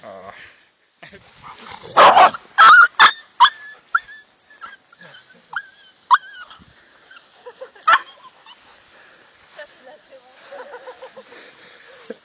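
Beagle puppy yelping in rough play with a larger dog: a quick run of four loud, sharp yelps about two seconds in, then a few shorter, fainter high yelps.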